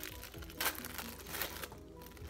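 A clear plastic sleeve around a phone case crinkles and crackles as it is pulled open by hand. The sharpest crackle comes a little more than half a second in.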